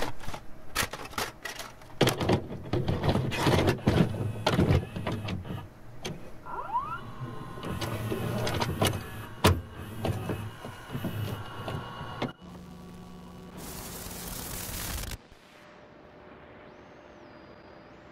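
Video-cassette recorder mechanism handling a tape: a run of plastic and metal clicks and clunks with a short motor whine, then a burst of hiss about two seconds long as the deck goes into play.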